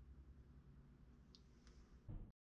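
Near silence: room tone with a faint low hum and two faint ticks in the second half.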